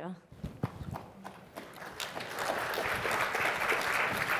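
Audience applause: a few scattered claps at first, swelling about halfway through into steady clapping from the crowd.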